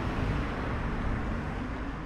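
Steady outdoor street ambience: an even low rumble and hiss with no distinct event, slowly easing off.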